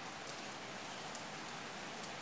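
Steady, even hiss with no distinct events.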